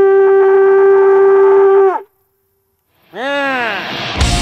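A blown war horn sounding two blasts in celebration of a landed muskie. The first is a long, steady note that sags in pitch and cuts off about two seconds in. After a pause of about a second, a second blast starts that bends up in pitch.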